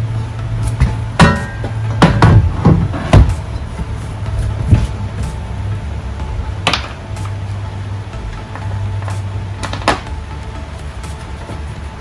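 Metal bed rack side rail knocking and clunking as it is set down onto the pickup's plastic bed-rail cap: a quick run of sharp knocks one to three seconds in, then a few single knocks later, over a steady low hum.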